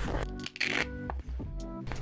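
Soft background music of held, sustained notes, with a light rustle of a plastic folder being handled about half a second in.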